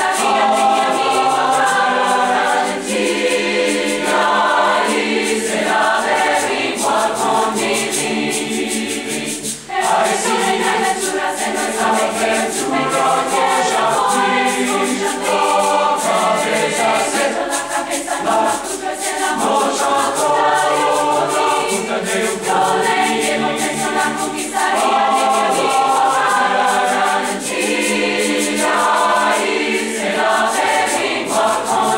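A large mixed choir of male and female voices singing in parts, changing chords every second or two, with a brief dip about ten seconds in.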